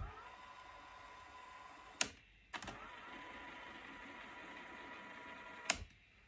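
Sony Walkman WM-F10 cassette player's keys clicking three times, at the start, about two seconds in and near the end. Between the clicks the tape mechanism's small motor whirs faintly with a thin steady whine while the music is stopped.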